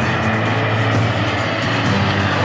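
Background music with held notes laid over the steady jet noise of a formation of Panavia Tornado fighter-bombers flying past.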